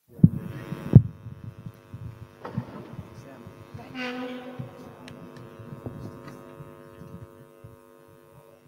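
A live microphone feed cutting in: two loud thumps in the first second, then a steady electrical hum from the sound system with faint room noises.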